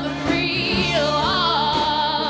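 Female lead vocalist singing with a live rock band of electric guitars, electric bass and drums. Her voice glides through a short phrase, then holds a long note with vibrato from about halfway through.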